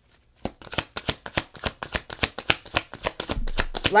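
A deck of tarot cards shuffled by hand: a quick, irregular run of card clicks and flicks that starts about half a second in.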